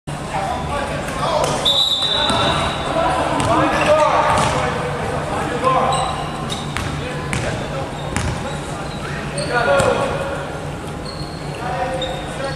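Basketball bouncing on a hardwood gym floor, several sharp bounces, with players' shouts and calls echoing in a large hall.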